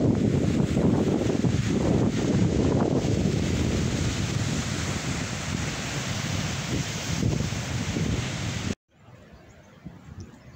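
Waves washing onto a sandy lakeshore with strong wind buffeting the microphone, a loud rushing noise heaviest in the low end. It cuts off suddenly near the end.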